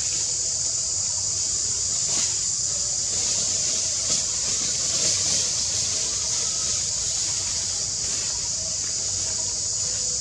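Steady, high-pitched drone of an insect chorus, over a low background rumble.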